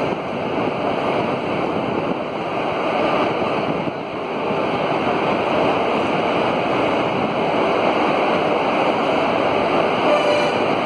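Passenger coaches of an express train rolling past close by as it pulls in to stop: a steady rushing rumble of wheels on the rails, growing slightly louder about halfway through.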